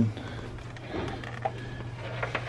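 Light handling noise from a plastic car-shaped novelty telephone as its handset is lifted: a few faint clicks and rustles over a steady low hum.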